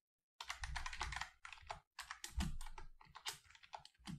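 Rapid typing on a computer keyboard: two runs of quick keystrokes with a brief pause about two seconds in.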